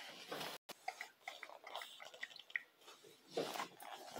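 Faint mouth sounds from a toddler close to a phone's microphone: a string of short, soft clicks and squeaks, with some rustling from the phone being handled near the end.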